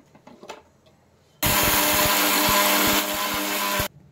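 A few light clicks as the steel jar and lid of a Preethi Zodiac mixer grinder are set in place. Then its motor runs loudly and steadily for about two and a half seconds, grinding roasted urad dal to flour, a little quieter for the last second, and cuts off suddenly.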